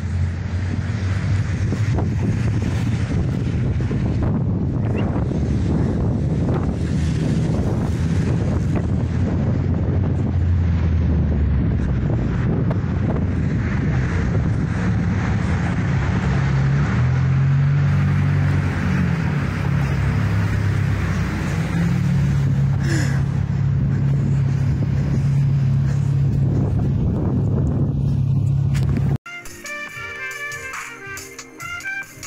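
Road traffic passing below a footbridge: vehicle engines humming and tyres on the road, with wind on the microphone. About a second before the end it cuts abruptly to music.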